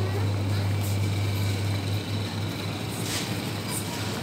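Steady low electrical hum of supermarket refrigerated chest freezers, with a brief soft hiss about three seconds in.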